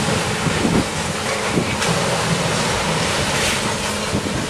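Steady loud outdoor noise at a demolition site: a rushing haze over a low hum, with a faint knock about two seconds in and another near the end.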